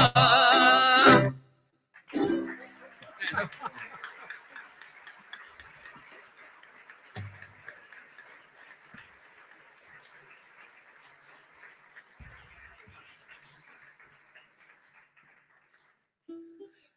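A Catalan folk song's last sung line, with guitar and ukulele, ends about a second in. Then audience applause starts and fades gradually over about twelve seconds.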